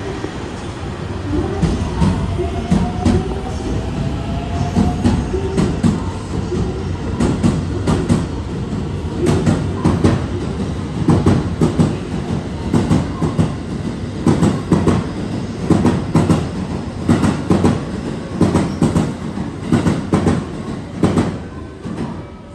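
A JR West 223 series electric train departs and runs past, its wheels clattering over rail joints in repeated groups of sharp knocks over a steady rumble. The knocks come closer together as it gathers speed. A faint rising motor whine is heard in the first few seconds, and the sound falls away as the last car passes near the end.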